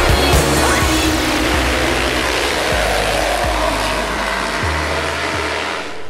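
A pack of motocross dirt bikes revving hard together off the start gate, one dense wall of engine noise. Music carries on underneath and drops away near the end.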